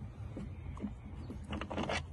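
Hand screwdriver backing a screw out of an RV door's window frame: a few faint ticks and scrapes, with a small cluster about one and a half seconds in, over a low steady rumble.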